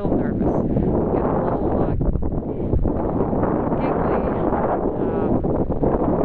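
Strong wind blowing across the microphone, a steady low rumble, with faint indistinct voices now and then.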